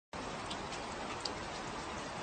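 Steady rain falling: an even hiss of rain with a few single drops ticking.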